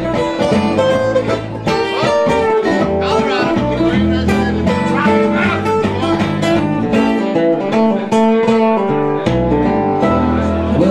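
Live acoustic string band playing a bluegrass-style cover: strummed acoustic guitars and picked strings carrying an instrumental passage between sung verses.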